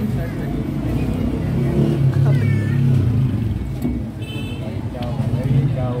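Busy street-stall ambience: voices talking in the background over a steady low rumble of traffic or engines, with a brief high-pitched tone a little after four seconds.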